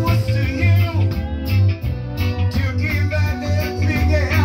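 Live reggae band playing through a PA, with a heavy, pulsing bass line and drums, and a man singing into a microphone over it.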